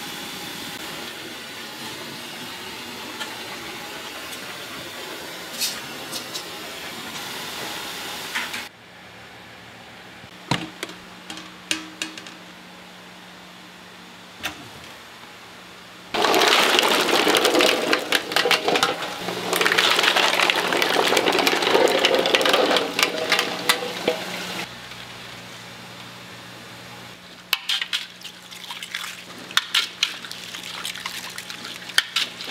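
A wide wok of noodles boiling hard gives a steady bubbling hiss for the first several seconds. After a quieter stretch with a few light knocks, water runs loudly into a pot of boiled eggs for about eight seconds. Near the end, eggs clink and splash in the water as they are handled for peeling.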